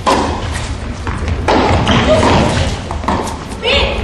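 Tennis rally on an indoor court: several sharp knocks of rackets striking the ball and the ball bouncing, with voices talking over it.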